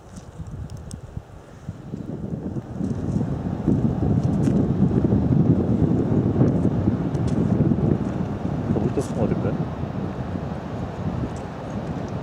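Wind buffeting the camera microphone: a gusty rumble that swells about three seconds in and stays strong, with a few faint clicks.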